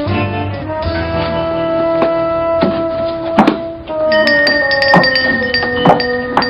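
Background music score of sustained chords with occasional struck, percussive accents. The chord changes about a second in, and a new, higher held note enters about four seconds in.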